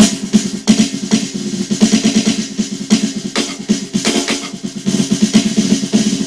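Triggered electronic snare drum sound from a converted acoustic snare fitted with an Extreme Drums internal trigger, played as fast rolls and single strokes whose loudness varies widely from hit to hit. The trigger is passing the full range of dynamics, from hard accents to soft notes.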